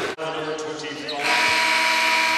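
Basketball arena noise with a steady, buzzing, sustained tone. The tone swells louder about a second in and holds.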